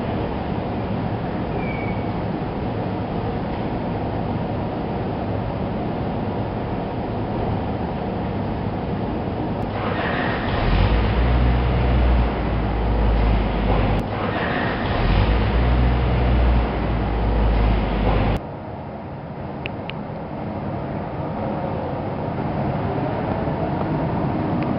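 A car running: a steady rumble and hiss, with a much heavier low rumble through the middle that changes abruptly a few times, then a quieter stretch near the end.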